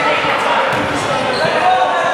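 Basketball bouncing on a hardwood gym floor while spectators talk, the sound echoing in a large gym.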